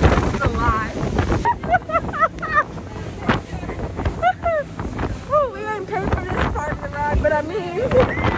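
Wind buffeting the microphone on a fast-moving motorboat, with the engine and rushing water underneath. A voice rises and falls over it, heard in snatches.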